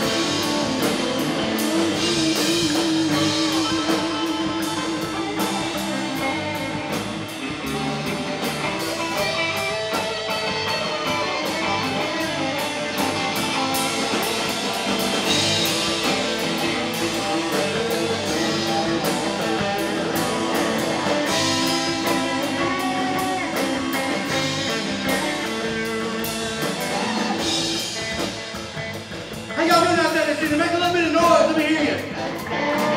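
Live electric band playing an instrumental passage: electric guitar lead lines with bending, wavering notes over bass guitar and a drum kit with cymbals.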